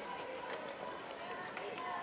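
Voices of people talking in the background, with scattered sharp clicks.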